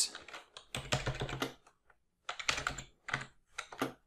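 Typing on a computer keyboard: several quick runs of key clicks with short pauses between them.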